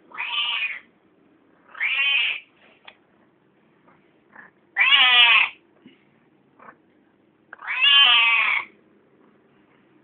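A female domestic cat meowing four times, each call under a second long and spaced two to three seconds apart, the last one the longest.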